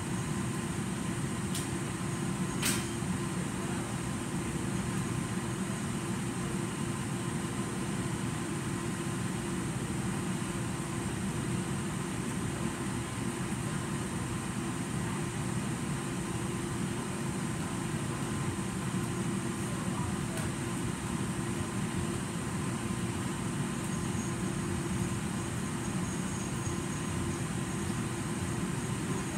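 Steady rumble and hum of a forced-air heating and cooling system running, blowing through a ceiling vent, with two short clicks about two seconds in.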